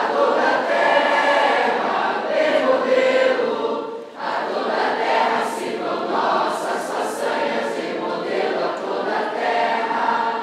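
A group of schoolgirls singing a song together, with a brief drop in loudness about four seconds in.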